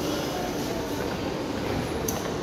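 A Fiat-Materfer subway train standing at an underground platform gives a steady hum with a few faint held tones, echoing in the station.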